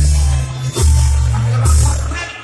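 Live brass band music played loud: trumpets, trombones and clarinets over a heavy bass line of sustained low notes, with two cymbal crashes, one at the start and one near the end.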